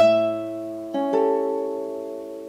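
Nylon-string classical guitar: the 12th-fret E on the first string is struck together with the open A bass string and rings. About a second in, a chord is plucked, its notes arriving in two quick onsets, and rings on while fading.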